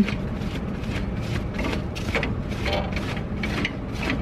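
Nut being turned by hand along the threaded rod of a Roadmaster Active Suspension helper spring to extend it. It makes a steady series of short metallic clicks and scrapes, about two or three a second.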